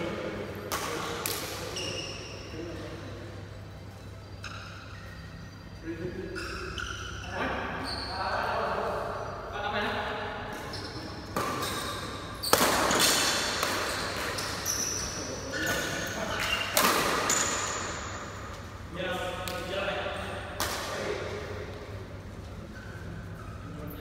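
Badminton doubles rally: sharp racket strikes on the shuttlecock every second or two, ringing in the hall, the loudest a little past halfway, with short shoe squeaks on the court floor between shots.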